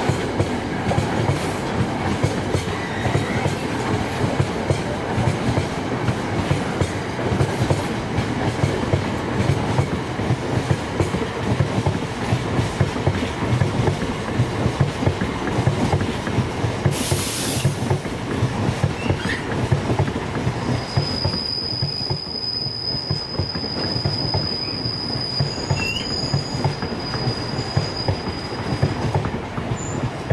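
Container freight wagons rolling past at speed, their wheels clattering rhythmically over the rails. A brief hiss sounds a little past halfway, and in the last third a thin, steady high-pitched wheel squeal sets in and holds for several seconds.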